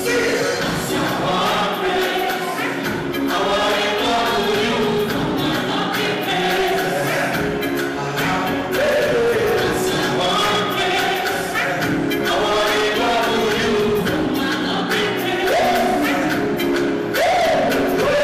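Live concert music: a male singer singing into a microphone over a loud backing track, with sung lines sliding up and down in pitch.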